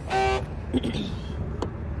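A single short car-horn beep on one steady pitch, lasting about a third of a second, over a low rumble of traffic.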